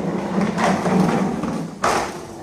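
A plastic toy car-carrier truck rolling off a plastic ramp and across a wooden floor, its wheels rattling, with a single sharp knock near the end.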